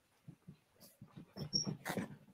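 Plush cuddly toys being squeezed to make them squeak: faint, with a couple of short high squeaks about one and a half seconds in.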